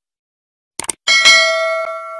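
Subscribe-button sound effect: a quick double mouse click, then a bright bell ding about a second in that rings on and slowly fades.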